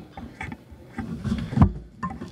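Handling noise on the podcast microphones: soft bumps and rustling as the children move and take their headphones off, with one heavier thump a little past halfway.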